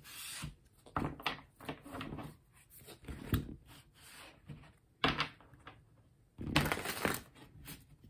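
Tarot cards being shuffled and moved about on a tabletop by hand: irregular rustling, sliding and light taps, with a sharper tap about five seconds in and a louder rush of shuffling a little later.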